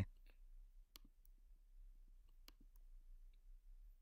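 Near silence: room tone with a few faint, sharp clicks, about a second in and again around two and a half seconds in.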